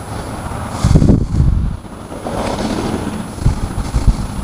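Wind buffeting the microphone: an irregular, gusty low rumble that swells strongly about a second in and again more weakly around two and a half seconds.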